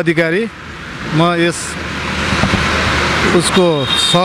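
Road traffic passing close by: a vehicle's engine and tyre noise growing louder over about two seconds, with short snatches of a man's speech.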